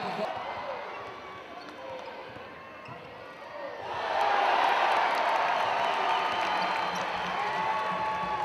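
Live basketball game sound in an arena: ball bounces on the court under a steady crowd noise that swells louder about halfway through.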